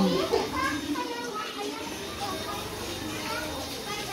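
Indistinct chatter of several voices, children's voices among them, with no single clear speaker.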